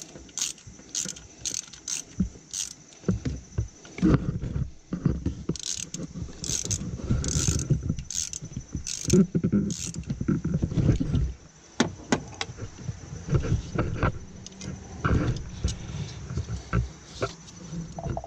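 A hand wrench worked in an engine bay: sharp metallic clicks and clinks, a quick run of them in the first few seconds and more near the end, with rubbing and handling noise in between.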